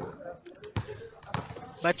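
A basketball being dribbled on a hard court, with two sharp bounces a little over half a second apart.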